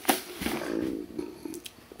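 A man's breath, starting as he stops talking and fading over about a second, followed by a few faint clicks.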